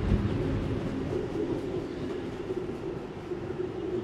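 A steady low rumble of a distant vehicle with a faint held hum, easing slightly in the second half.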